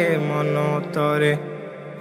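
Music from a Bengali Islamic song (gojol): wordless backing voices hold sustained, chant-like notes between sung lines, dropping lower in level in the last half second.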